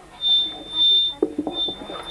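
A high, steady single-pitched tone like a buzzer, heard in three stretches with short gaps, over faint voices.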